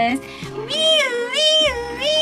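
A person's voice imitating a fire truck siren, a high wail that starts under a second in and swoops up and down in pitch over and over.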